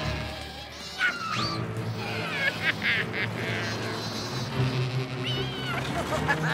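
Cartoon soundtrack music with several short, high animal-like cries over it that slide up and down in pitch.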